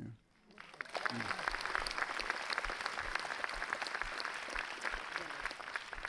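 Audience applause: many hands clapping together, building up in the first second and then holding steady.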